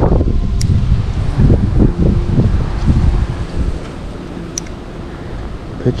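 Wind buffeting the microphone in uneven gusts, heaviest in the first four seconds and easing near the end, with two faint sharp ticks.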